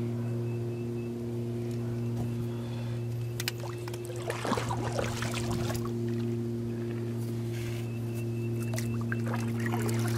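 Electric trolling motor on a canoe humming steadily. A few light clicks come about three and a half seconds in, followed by a short rustle at about four and a half to five and a half seconds.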